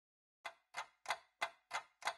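A clock ticking steadily, about three ticks a second, starting about half a second in.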